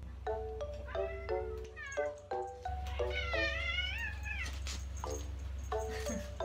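A Munchkin cat meowing: a short rising call about two seconds in, then a long wavering meow from about three seconds to four and a half. Background music of short struck notes plays throughout.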